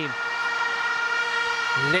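Stadium crowd noise with a steady drone of fans' horns: several held tones sounding together without a break.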